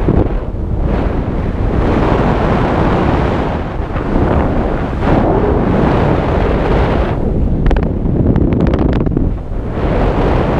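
Loud wind buffeting the microphone of a camera carried high in the air: a rushing roar that swells and eases in gusts, with a brief fluttering patch late on.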